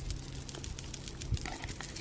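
Cicadas in the trees giving a faint, dry, crackling run of clicks, with a soft low thump a little past halfway.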